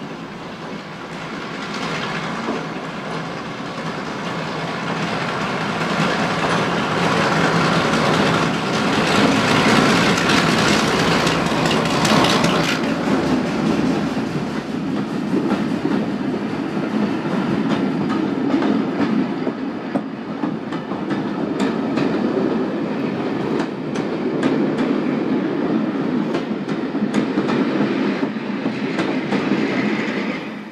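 Diesel locomotive hauling a passenger train drawing nearer and passing close by, its engine loudest about ten seconds in. The coaches then rumble past with a rapid clickety-clack of wheels over the rail joints.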